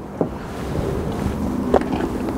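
Wind buffeting the microphone: a rumble with hiss that grows louder, with a light click about a quarter second in.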